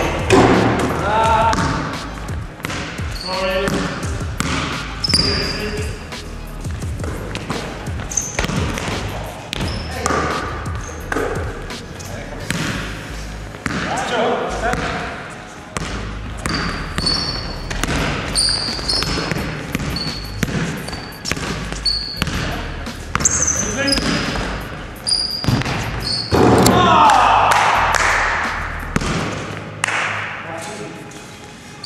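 Pickup basketball in a large sports hall: a basketball bouncing and dribbling on the court floor with repeated sharp knocks, short high squeaks from sneakers, and players' voices calling out, all with hall echo. A louder burst of noise and voices comes near the end.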